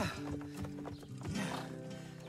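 Background music with a horse sound effect standing for the unicorn foals: a whinny falling in pitch right at the start, and hooves clip-clopping.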